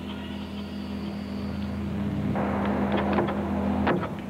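Steady low electrical hum with arena background noise that swells about two seconds in, and a few light knocks near the end.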